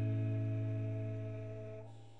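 Final acoustic guitar chord ringing out and slowly fading. Its higher notes die away near the end and a low bass note lingers.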